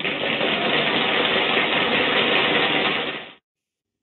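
A steady, rapid rattling sound effect, like a suspense build-up before a quiz answer is revealed. It runs for about three and a half seconds and stops abruptly.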